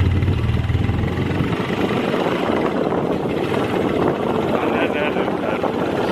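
Motorbike riding along a street: the engine's low drone is strongest for the first second or so, under a steady rush of wind on the microphone.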